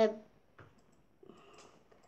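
A girl's voice says a hesitant "the" at the very start while reading aloud, then only faint clicks and a soft rustle.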